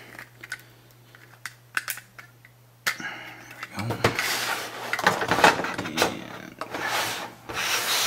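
LEGO plastic parts being handled: a few light clicks, then from about three seconds in, ragged scraping and rubbing as a section of the set is slid along the surface and pressed onto the rest of the build.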